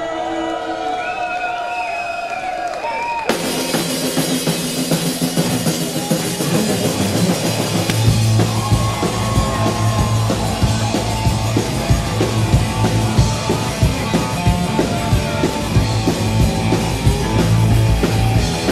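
Live rock band on stage: a man's voice, then the full band comes in suddenly about three seconds in with drum kit, bass and guitar. The drums and bass get heavier from about eight seconds on.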